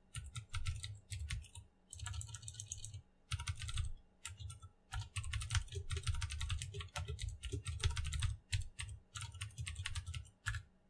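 Computer keyboard typing: rapid keystrokes in short runs with brief pauses between words.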